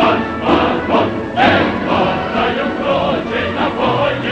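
A choir singing a Soviet march song with instrumental accompaniment and a sustained bass.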